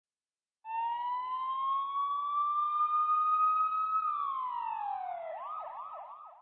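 Police siren wailing. It rises slowly in pitch for about three seconds and then falls, and near the end it switches to a fast yelp of about four sweeps a second.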